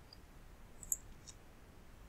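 Computer mouse clicking twice, about a second in and again shortly after, over low background hiss.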